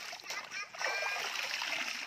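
Water splashing and pouring back into a shallow stream as a wet garment is wrung out by hand, over the steady sound of the running stream.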